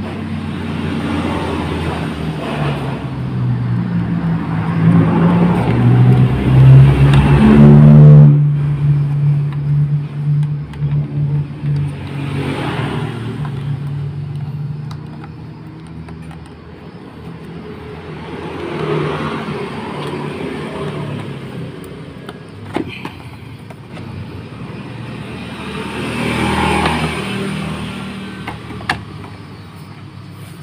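Motorcycle engine noise that climbs in pitch to a loud rev about eight seconds in and cuts off sharply. It is followed by a steadier engine note and several later swells and fades, like machines passing by.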